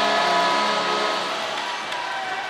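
Rink sound after a goal: music with held tones over a steady hiss of crowd noise, easing slightly in the second half.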